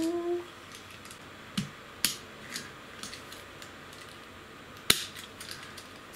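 A few sharp little clicks of a die-cast toy car being handled as its small doors are snapped open, the loudest near the end, with faint ticks between.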